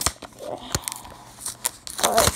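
Stiff clear plastic blister packaging being pried and pressed by hand, giving a few sharp clicks and crackles with faint rustling between them.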